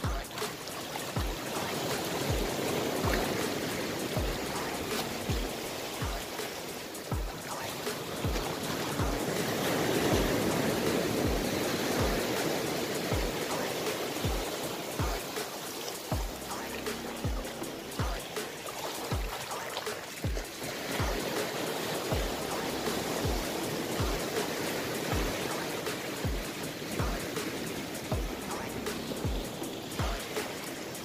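Background music with a steady low beat, over the rush of surf breaking on the shore.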